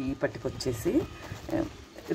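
Speech only: a voice speaking in short, quieter fragments.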